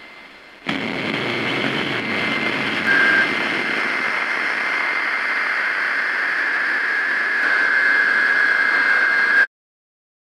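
A loud, steady rushing noise drone with a thin, high, steady whine over it. It cuts in abruptly under a second in, and a second, slightly lower whine joins near the end before the whole sound cuts off sharply.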